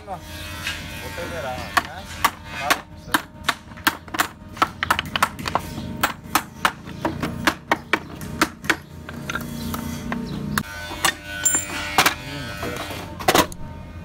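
Steel hammer driving nails into a pine-board box frame: a run of sharp wood-and-metal strikes, about two to three a second, with short pauses between runs.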